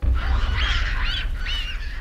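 A few short bird calls, high-pitched and arched, over a loud deep steady rumble.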